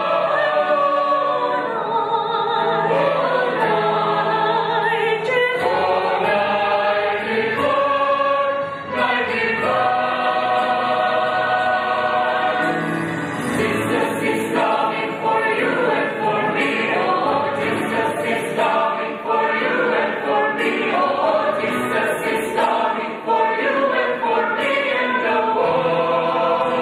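A mixed church choir singing together, its voices picked up through microphones.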